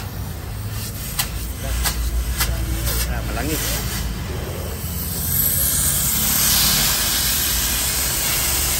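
A few sharp clicks, then from about five seconds in a steady hiss of gas escaping under pressure, growing louder, over a low rumble.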